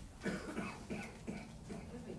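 A person coughing, a string of short coughs over the first second or so.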